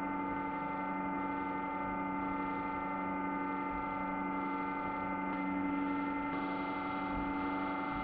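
Steady electrical hum made of several steady tones, with a slight change in its upper tones about six seconds in.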